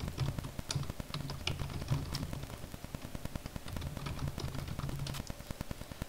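Typing on a computer keyboard: a quick, irregular run of key clicks as a command is typed.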